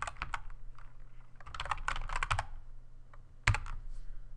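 Typing on a computer keyboard as a word is typed out: quick keystrokes in short bursts, with a couple of sharper, louder key presses near the end.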